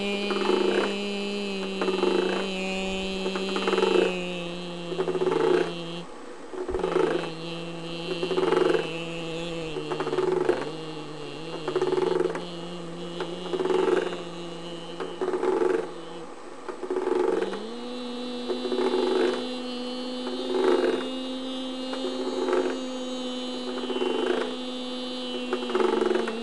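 A person humming one steady wordless tone that shifts pitch a few times and rises near the end. Over it, a repeated sound comes about once a second, made by the hand's movements.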